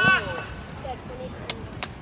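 Two sharp knocks about a third of a second apart near the end, a soccer ball being kicked on an artificial-turf pitch, over the murmur of a youth soccer match with a voice trailing off at the start.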